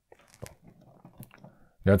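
Faint rustling and small plastic clicks as a Super7 Man-E-Faces action figure is handled and set standing on a wooden table, with two sharper clicks about half a second and a little over a second in.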